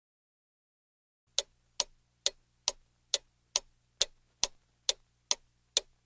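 A clock ticking steadily, a little over two ticks a second, starting about a second and a half in over a faint low hum.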